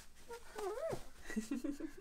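A toddler babbling: a high squeal that rises and falls about half a second in, then a few short syllables.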